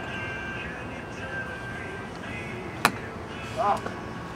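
A golf club striking a teed-up ball: one sharp, short crack nearly three seconds in.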